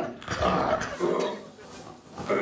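A man's wordless, grunting vocal noises: a short burst at the start and a longer one in the first second, then quieter.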